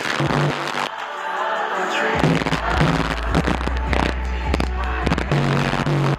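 Loud live concert music through an arena sound system, with sharp percussive hits. A deep bass line enters about two seconds in and drops out near the end.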